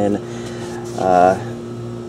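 A man's voice: a word at the start, then a single drawn-out voiced sound about a second in, over a steady low hum.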